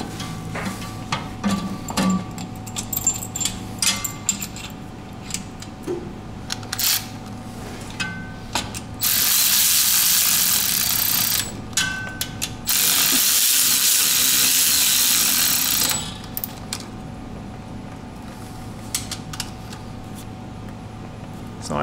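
Starter mounting bolts being run in under a car. A ratchet clicks in short runs, then a cordless power tool runs in two long spells of about two and a half and three seconds, which are the loudest sounds, with a few clicks between and after.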